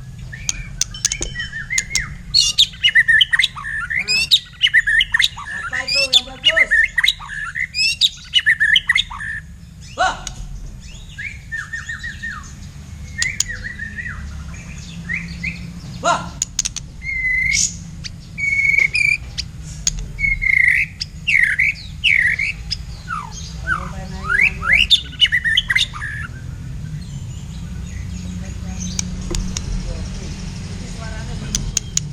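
Black-tailed white-rumped shama (murai batu) singing: a run of varied whistled and chattering phrases with short pauses, dying away near the end, over a steady low rumble.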